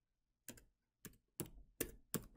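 Computer keyboard typing: four separate keystrokes, irregularly spaced about half a second apart.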